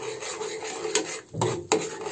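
A steel ladle scraping and stirring thick tomato-chilli chutney paste around a steel pan, mixing in the ground spices, with a couple of light metal clinks.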